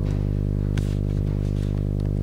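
Steady electrical hum from the sound system, a low buzz with many evenly spaced overtones that does not change, with a couple of faint clicks about a second in.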